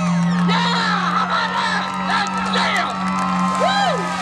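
A mud-bogging pickup truck's engine held at steady high revs as it pushes through deep mud, with spectators whooping and cheering over it.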